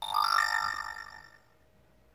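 Moto G6 smartphone playing an Android notification chime through its speaker: a short chime of a few notes that starts suddenly and fades out within about a second and a half, sounding as a notification arrives.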